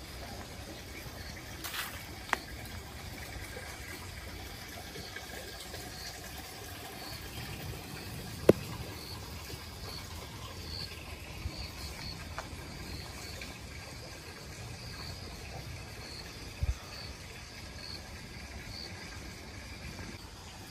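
Woodland ambience with an insect chirping, short high chirps repeating about once a second, over a low steady rumble. A sharp click sounds about eight seconds in and a low thud near the end.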